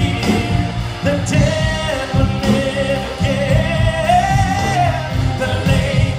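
Live band with several singers: a held, gently sliding sung melody over electric guitars and a steady beat, heard from among the audience.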